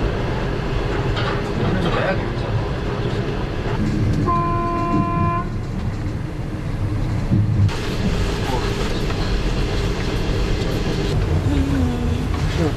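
Steady low rumble of a passenger train running, heard inside the carriage, with one horn blast about a second long a little over four seconds in.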